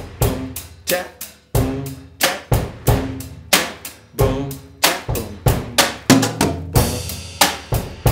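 Acoustic drum kit playing a basic beat: steady eighth notes on the hi-hat, with bass drum and snare strokes in an even rhythm. A longer cymbal ring comes in about seven seconds in.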